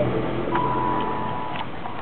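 Electric motor and gears of a radio-controlled scale Land Rover Defender D90 crawler whining steadily as it drives over grass, with a few sharp clicks. The whine starts about half a second in and stops before the end.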